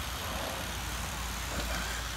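Vehicle engine idling steadily, heard as a low, even hum.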